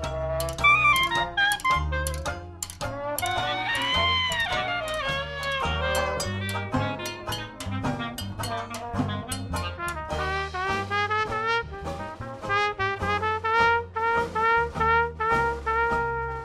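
Traditional New Orleans jazz band playing an instrumental chorus: a brass horn leads the melody over a steady bass line and strummed rhythm, with a run of short repeated notes from about ten seconds in.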